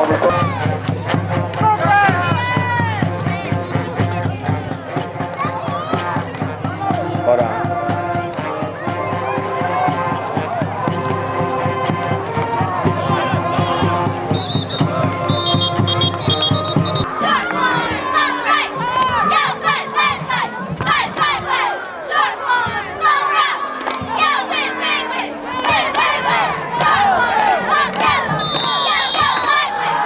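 Crowd noise at a high school football game: many voices shouting and cheering over one another, growing denser about seventeen seconds in. A steady low drone runs beneath it through the first half and stops there, and short high-pitched tones sound briefly a little before the drone ends and again near the end.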